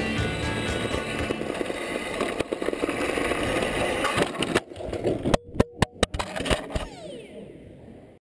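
Music running under the noise of an RC touring car on a carpet track. Then a quick series of sharp knocks comes about two-thirds of the way in as the car crashes and rolls over, followed by a falling whine as its wheels spin down.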